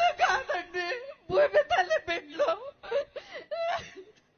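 A woman crying and wailing as she speaks, her voice breaking into short, wavering sobbing bursts.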